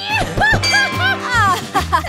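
A woman laughing loudly over background music.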